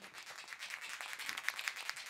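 A small bottle of cleaning product being shaken by hand, making a fast run of faint clicks.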